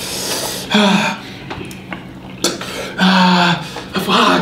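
A man clears his throat and sighs, his throat burning from an extremely hot sauce. A spoon scrapes in a carton of ice cream, with one sharp click about halfway through.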